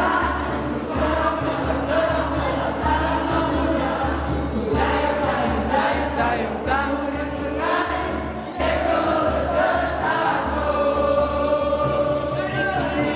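A song sung by many voices together over backing music with a steady bass beat, loud and without a break.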